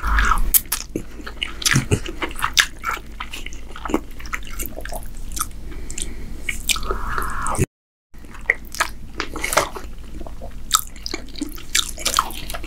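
Wet chewing of ribbon pasta in meat sauce, with many short sticky mouth clicks. The sound drops out completely for about half a second about two-thirds of the way through.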